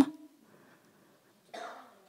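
A woman's sentence ends at the start, then near silence, then a single short cough about one and a half seconds in, much fainter than the speech.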